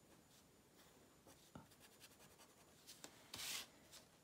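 Faint scratching of a gold pen nib drawing on watercolour paper, with small ticks as it moves. A brief, louder scrape comes near the end.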